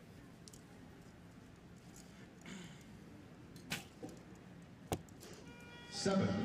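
An Olympic recurve bow being shot outdoors: over quiet background noise, a few sharp clicks and snaps as the arrow is released from a long hold, the sharpest about five seconds in.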